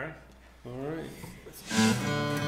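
A man speaks briefly, then near the end acoustic guitars strike up with a strummed chord, starting the song.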